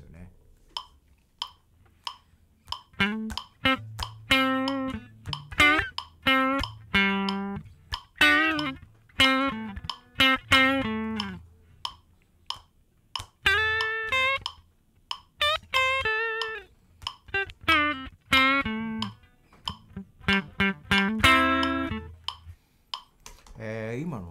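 Electric guitar with a Telecaster-style body playing short, clean, bluesy single-note phrases that start off the beat, leaving gaps between them. Under it runs a backing with a low, held bass line and a light, regular ticking beat.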